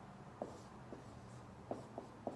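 Marker writing on a whiteboard: a few short, separate strokes in a quiet room.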